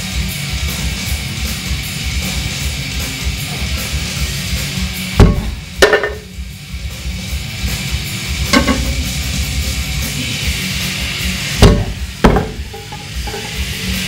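Heavy rock music plays throughout, and twice, about five and twelve seconds in, come a pair of loud knocks: 35-lb iron weight plates being set down and knocking against the gym floor and each other during a plate-pinch grip exercise.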